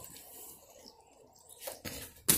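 Faint rustling, with a couple of soft knocks near the end, from a handheld phone being moved about.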